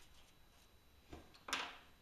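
Quiet room tone with a soft thump about a second in, then a single short, sharp knock about half a second later as things are handled on the workbench.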